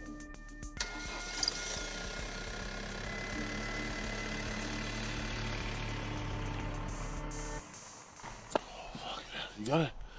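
A steady drone made of several held tones, starting about a second in and cutting off suddenly after about seven and a half seconds. Near the end come a couple of short breathy sounds from a person.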